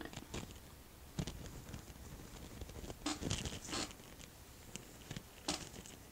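Faint, scratchy strokes of a makeup brush worked over the skin, in short separate bursts, the strongest a little after three seconds and again near the end.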